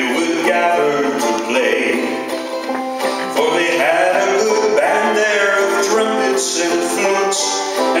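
Folk ballad performed live: a man singing to banjo accompaniment.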